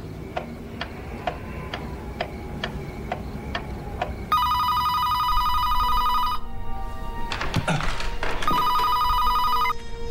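A pendulum clock ticking about twice a second, then a telephone ringing twice: a trilling ring of about two seconds, a pause, and a shorter second ring. Sustained underscore music enters under the rings.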